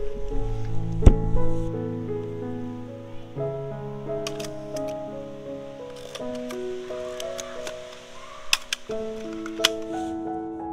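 Mechanical clicks of a Mamiya RB67 medium-format film camera being worked on its tripod: one sharp click about a second in, and several more through the second half. Under them runs background music of slow, held piano-like notes.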